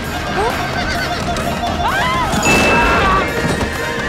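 Horses whinnying and hooves pounding amid shouting voices over an orchestral film score, in a dense battle-scene mix.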